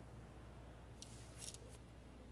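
Near silence over a low steady hum, with a short dry rustle and scrape about a second in, the sound of a man's clothing and shoes as he rises from a stoop.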